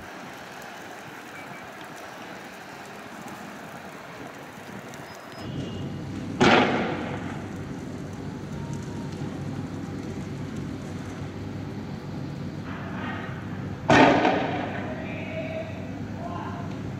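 Two loud bangs from tear gas rounds being fired, about six seconds in and again some seven seconds later, each echoing briefly, over steady outdoor street noise.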